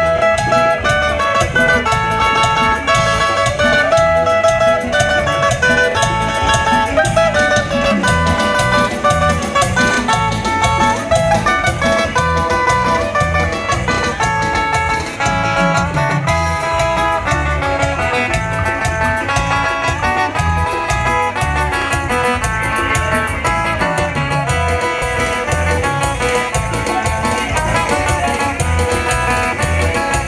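Live band playing amplified dance music through a PA: a stepping melody on keyboard and guitar over a steady bass and drum beat, with no singing.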